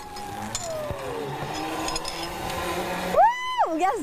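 Zipline trolley pulley running along a steel cable, a steady whirring rush. About three seconds in, a woman lets out one loud, high whoop on the ride.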